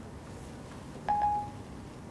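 An iPhone 4S plays Siri's electronic tone once, a short single-pitched chime about a second in, as Siri stops listening to the spoken request.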